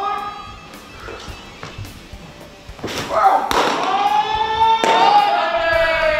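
Voices calling out in long, drawn-out shouts, with a sharp thud about three seconds in.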